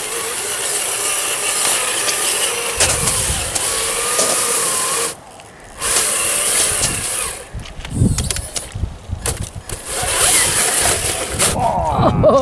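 Traxxas TRX-4 RC crawler on a 3S LiPo, its electric motor and geared drivetrain whining under throttle as the tyres churn through soft slushy snow. The whine cuts out suddenly about five seconds in, then picks up again in uneven spurts with low thumps as the truck tips over in the snow.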